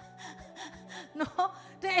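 Short breaths and brief vocal sounds from a woman into a handheld microphone in a pause between spoken phrases, over a faint steady low hum.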